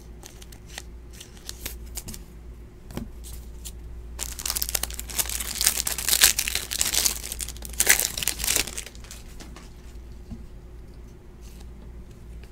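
A trading card pack's plastic wrapper being torn open and crinkled by hand, loudest from about four to nine seconds in, after a few seconds of light clicks from card and sleeve handling.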